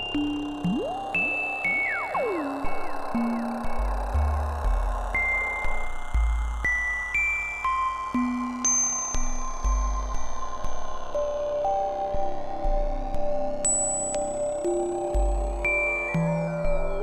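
Synthesizer drone from a VCV Rack software modular patch: sustained tones that step from note to note over changing bass notes, with high bell-like tones and a regular pulse in loudness. Two quick pitch glides come near the start, and a slow sweep runs through the high end.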